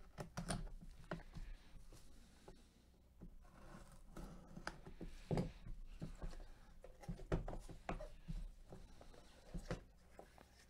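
A razor blade slitting the seal sticker on a cardboard trading-card box, then the box being turned over and handled by gloved hands: faint scraping and rustling with a few light knocks.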